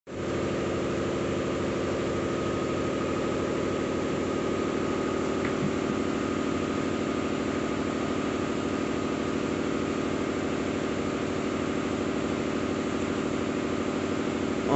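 A steady mechanical hum with a thin high whine above it, even and unchanging throughout, from a running machine such as a motor.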